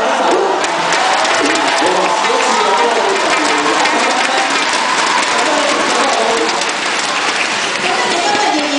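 Audience applauding, the dense clapping picking up about a second in and easing off near the end, with voices over the microphones underneath.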